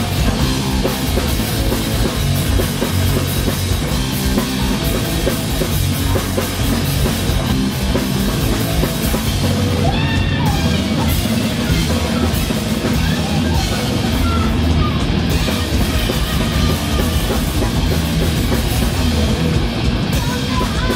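Live hardcore punk band playing at full volume: distorted guitar and bass over a pounding drum kit, with a vocalist shouting into a handheld microphone around the middle.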